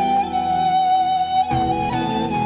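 Slow instrumental music: a melody of long held notes, with a new note starting about one and a half seconds in.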